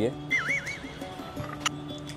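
A dog's short, wavering high-pitched whine, about half a second long, as it begs for food, over soft background music; a brief click comes near the end.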